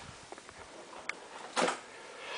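Faint clicks and a brief rustle over low room noise, from someone moving about with a hand-held camera. The rustle comes a little past halfway and is the loudest sound.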